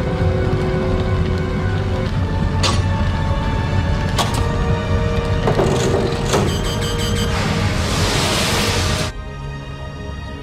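Tense film score over an explosion-and-fire sound effect: a steady low rumble with three sharp bangs, then a loud hissing rush that cuts off suddenly about nine seconds in.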